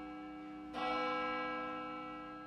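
Intro music of bell chimes: a ringing bell chord decays slowly, and a fresh strike sounds a little under a second in and rings on.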